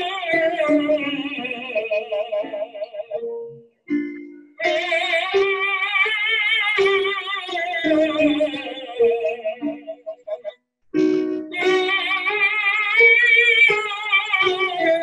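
Tenor singing an ah vowel with vibrato in three sung phrases that pass through his upper passaggio, with short breaks between them where brief piano notes sound. He keeps the same open mouth shape while the vowel quality turns over on the top notes: passive vowel modification as the pitch passes the vowel's first formant.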